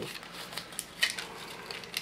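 Adhesive foil tape being handled and peeled, faint crinkling and crackling with a sharper click about a second in.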